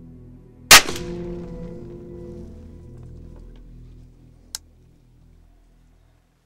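A single revolver shot about a second in, very loud and sharp, trailing off over the next few seconds, over soft background music.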